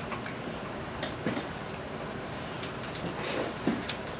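A deck of playing cards being handled and mixed in the hands: light clicks and snaps at irregular times.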